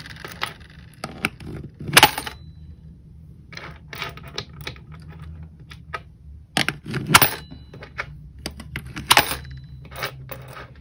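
Coins being fed one at a time into the slot of a digital coin-counting jar, each dropping in with a sharp clink onto the coins inside. The clinks come at irregular intervals, the loudest about two, seven and nine seconds in.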